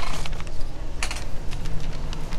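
Irregular clicks and rustling from a clip-on lapel microphone knocking and rubbing against clothing as its wearer moves, with sharp knocks at the start and about a second in.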